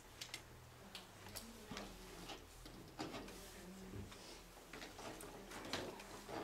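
Scattered, irregular small clicks and taps of pens and pencils on paper and tabletops as people write and draw, over a low steady hum in a quiet room.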